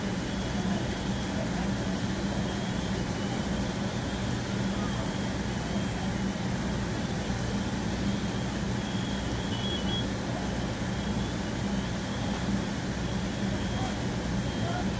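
Fire apparatus engine running steadily at the fire scene, a low even drone that does not change.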